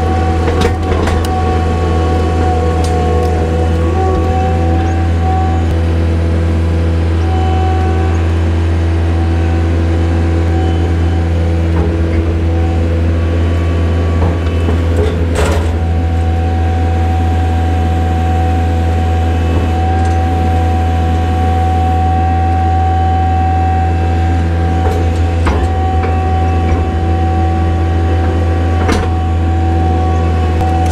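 Skid-steer loader's diesel engine running steadily under working revs as the machine drives and shifts a metal creep feeder with its fork frame, a steady whine above the engine note. A few knocks of metal on metal, the loudest about halfway through.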